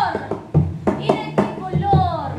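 A woman singing live, her voice sliding between notes, over a regular beat of low thumps and sharp percussive hits about twice a second.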